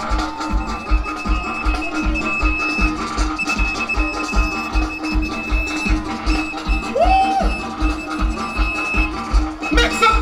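Live soca band playing an instrumental stretch of a song, with a steady driving beat of about two kick-drum pulses a second under held keyboard notes, and no singing.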